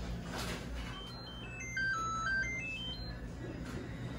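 A short electronic chime melody of clear beeping tones, about two seconds long, stepping down in pitch and then back up, over a steady low hum.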